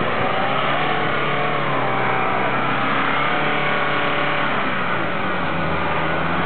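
Jeep Wrangler Rubicon engine running under load as the 4x4 works its way along a deep muddy rut, the revs rising and then falling back.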